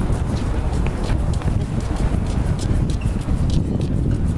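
Footsteps on hard paving, a string of sharp irregular clicks, over a steady low rumble of wind on the microphone.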